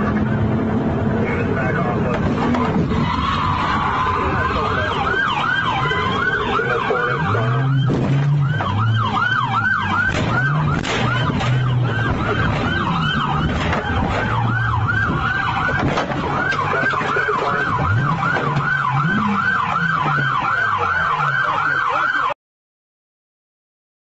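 Emergency vehicle siren in yelp mode: a fast rising-and-falling wail, several cycles a second, starting a few seconds in and running on, over traffic and engine noise.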